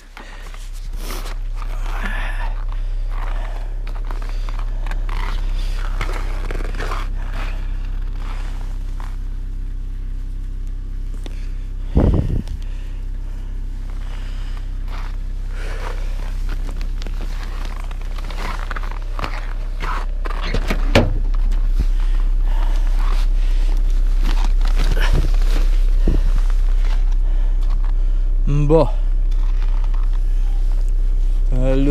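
Footsteps crunching on packed snow, with a few sharp knocks and clunks as a car door is opened and gear is handled, all over a steady low hum that gets louder in the second half.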